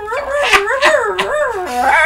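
A man laughing hard in a high, wavering voice that rises and falls in pitch like a howl.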